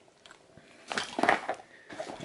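A short burst of rustling and clicking about a second in, lasting about half a second, from a zippered fabric gear pouch being picked up and handled.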